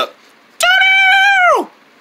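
A single high, held note lasting about a second, steady and then dropping in pitch as it fades out.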